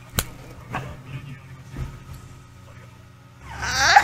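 A woman laughing: a few faint sounds at first, then near the end a loud laugh that rises into a high-pitched squeal.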